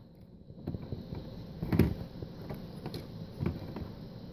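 Handling noise from a hand-held camera: a low rumble with several soft knocks and rustles, the loudest a little under two seconds in.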